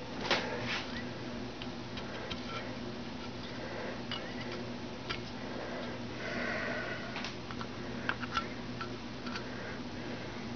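Small metal engine parts and bolts being handled on a workbench, giving scattered light clicks and knocks, the loudest just after the start, with a short scraping clatter about six seconds in, all over a steady low hum.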